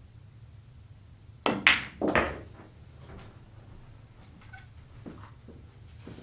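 Pool shot on a billiards table: the cue tip strikes the cue ball, then a sharp, loud click of cue ball on object ball, and a heavier knock about half a second later from a ball meeting a rail or pocket. A few faint knocks follow.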